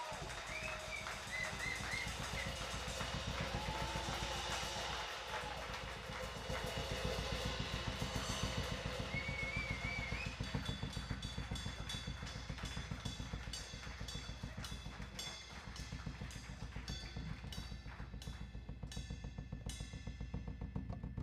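Live Balkan folk band playing: a drum kit keeps a fast steady beat under accordion and double bass, with short wavering melodic phrases above in the first half. From about halfway on the drum strokes grow sharper and more prominent.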